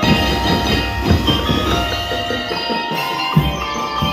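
Drum and lyre corps playing: many mallet-struck bell lyres ringing out a melody over bass drum and drum kit beats, the low drums coming in right at the start.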